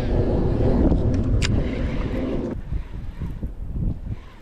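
Wind rumbling on the microphone while a baitcasting reel's spool spins out line during a cast. The spinning stops abruptly about two and a half seconds in, and there is a brief sharp sound about a second and a half in.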